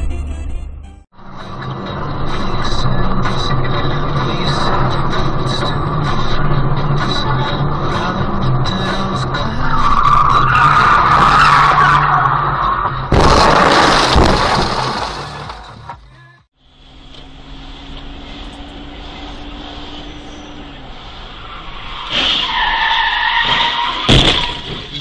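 Car driving sounds from dashcam footage: engine and road noise, tyres skidding, and a loud burst of noise just past halfway, typical of a collision.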